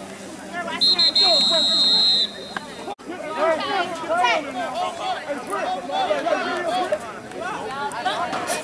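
A referee's whistle gives one long, high blast about a second in. After a short break, a crowd of spectators talks and calls out over one another.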